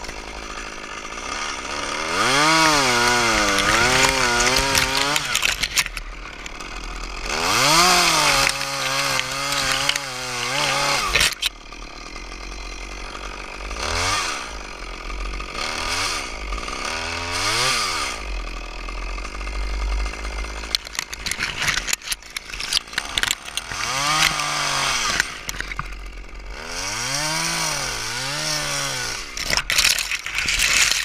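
Stihl top-handle two-stroke chainsaw revving up in repeated bursts of a few seconds each as it cuts through a spruce trunk, dropping back to idle between bursts.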